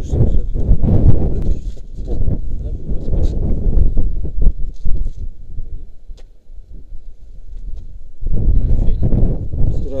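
Wind buffeting the action camera's microphone as a loud, gusty low rumble. It dies down about halfway through, then picks up again suddenly a couple of seconds before the end.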